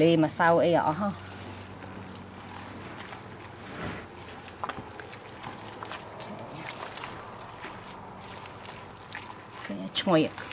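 Gloved hands kneading and squeezing a wet batter of shredded kabocha, rice flour, grated coconut and coconut milk in a stainless steel bowl: a steady wet squishing with small scattered ticks, after a short laugh at the start.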